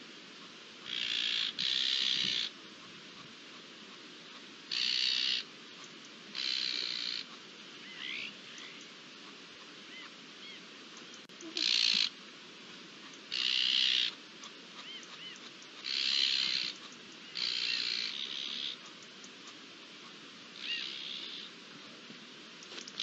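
Harsh, rasping bird calls, each under a second long, repeated about ten times with gaps of a second or two and some in close pairs, with a few faint thin whistled notes between them.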